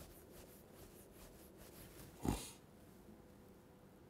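Quiet room tone with one short, sharp breath close to the microphone a little over two seconds in.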